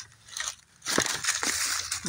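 Long-handled loppers snapping through a woody stem about a second in, followed by a rustling of dry leaves and brush.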